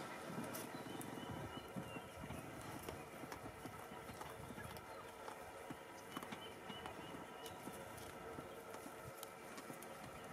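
Warthog feeding at close range: faint, irregular small clicks and rips as it crops short grass and roots in the soil with its snout.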